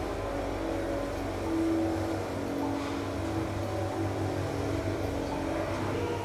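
KONE elevator car travelling upward between floors: a steady mechanical hum with a low drone and a constant mid tone.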